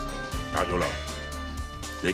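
Background drama score with held, sustained tones, and a short yelping vocal exclamation about half a second in.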